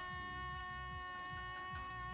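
A wind instrument holding one long, steady note.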